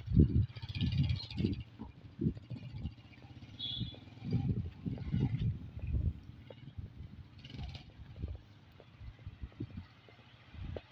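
Wind buffeting the microphone in irregular low gusts, over a small motorcycle engine running faintly as the bike pulls away and fades into the distance.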